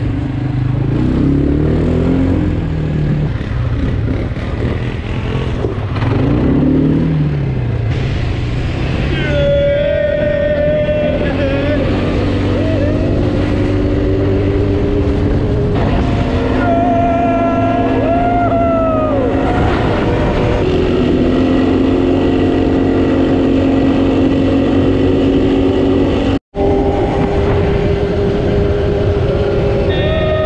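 Quad bike engine running under way, its pitch rising and falling in the first seconds and then holding steady, with wind rushing over the microphone. Riders shout and whoop over it in the middle, and the sound cuts out for an instant near the end.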